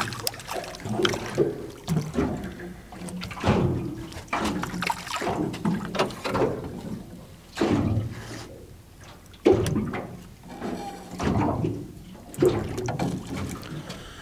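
Small waves lapping and slapping against the side of a boat in irregular splashes.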